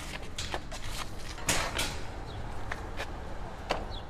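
Walk-behind lawn mower pushed up a steel mesh ramp onto a hitch-mounted steel cargo basket: scattered clanks and rattles of its wheels on the metal, loudest about a second and a half in, over a steady low rumble.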